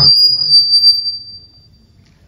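A single long, high whistle that starts loudly, sinks slightly in pitch and fades out after about a second and a half, over faint voices.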